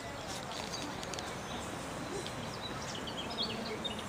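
Small birds chirping in short, quick calls, most of them in the second half, over a steady background hubbub.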